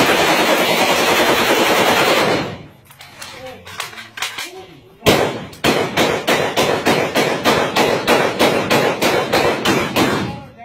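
Rifles fired into the air in rapid succession: a dense, almost unbroken string of shots for the first two and a half seconds. After a short lull, a steady run of separate shots comes at about three a second from about five seconds in.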